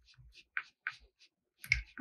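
A paintbrush working paint on a paper worksheet: a few faint, short taps and clicks as the bristles dab and mix, about half a dozen in the first second or so.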